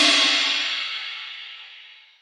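Closing music ending: a cymbal rings on and fades away over about two seconds.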